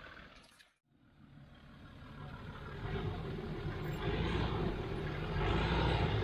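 Land Rover Discovery engine running at low revs as it crawls through deep mud ruts, fading in after a brief silence about a second in.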